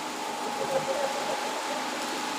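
A pause between spoken lines, filled by a steady background hiss with a faint, steady high hum and faint, distant murmuring voices.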